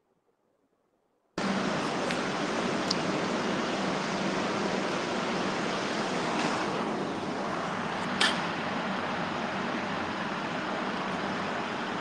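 Steady rushing background noise over an open video-call microphone, cutting in abruptly about a second in, with a faint hum beneath it and one short click near eight seconds.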